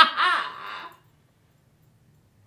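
A woman laughing, a last loud, drawn-out "ha!" that fades out about a second in.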